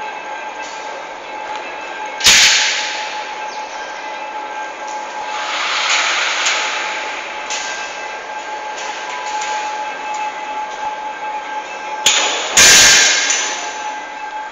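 Festoon cable trolleys rolling along a steel track, a steady rolling rumble with a faint steady whine. Two loud metallic clangs, one about two seconds in and one near the end.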